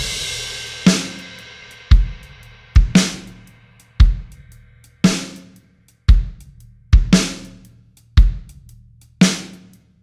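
Drum bus (kick, snare, hi-hats and cymbal) played through a tape-saturation plugin with its high-end shaping pushed up, giving the top end sizzle. One hard hit about every second, with a crash cymbal ringing out after the first.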